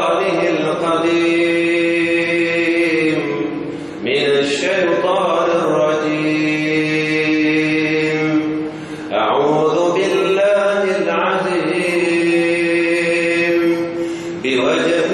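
A man's voice chanting in three long, drawn-out melodic phrases, each about four to five seconds with a short break between: an Arabic recitation of the supplication for entering a mosque, seeking refuge in God from the accursed Satan.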